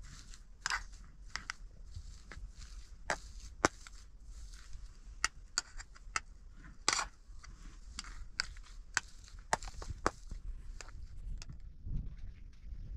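A metal spoon mashing potatoes in a metal bowl, irregular sharp clinks against the bowl mixed with short scraping sounds.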